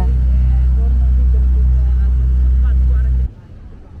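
A motor's loud, steady low rumble that cuts off abruptly a little over three seconds in.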